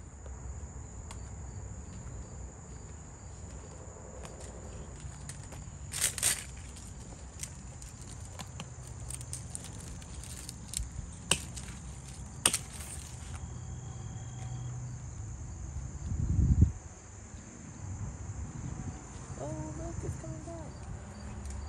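Insects trill steadily at a high pitch throughout. Leaves and stems rustle and snap sharply a few times in the middle as a giant white kohlrabi is handled and pulled from a plastic stacking planter, and a dull low thump comes near the end.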